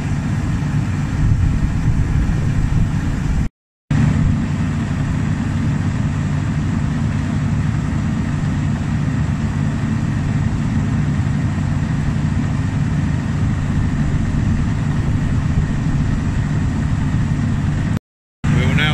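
Engine running steadily at a constant speed, supplying the hydraulics that rock the combine's feed accelerator back and forth through the reverser. The sound cuts out completely for a moment a few seconds in.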